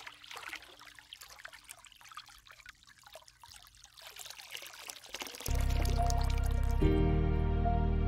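Water trickling and splashing for about the first five seconds. Then ambient music comes in suddenly and loudly with a sustained low chord, which gains more notes about a second later.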